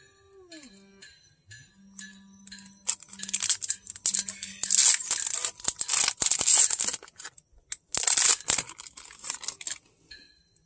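Booster-pack wrapper being torn open and crinkled: a run of loud ripping and crinkling in several bursts, starting about three seconds in and stopping just before the end.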